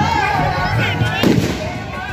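A single firecracker bang a little over a second in, heard over crowd voices and music from loudspeakers.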